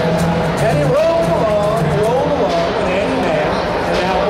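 A man singing while strumming an acoustic guitar, his voice sliding up and down over steady held chords.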